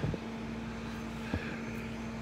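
Steady low hum of an idling vehicle engine, with a short knock right at the start and a faint tick a little over a second in.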